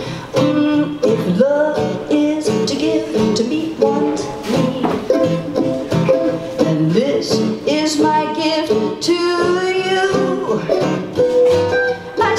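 Acoustic guitars and a mandolin playing an instrumental break in a country-folk song: a lead melody with sliding notes over strummed chords.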